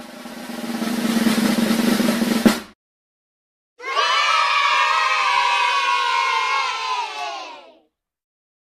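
Snare drum roll building up in loudness and ending in a crash, the classic winner-reveal sound effect. After a second of silence, a cheer of many voices slides slowly down in pitch and fades away.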